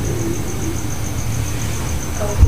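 Steady low rumble with even background noise, and a cricket chirping in a fast, even high pulse throughout.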